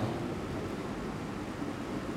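Steady, even background hiss of room noise.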